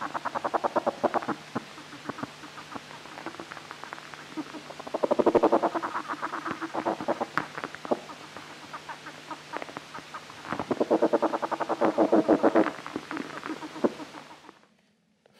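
Caterpillar stridulating inside an ants' nest by vibrating a hard internal organ, recorded with a particle velocity microphone and played back over loudspeakers. Three bouts of rapid pulses, each about two seconds long, with fainter pulsing between them. This is the signal that makes the wood ants feed the caterpillar rather than eat it.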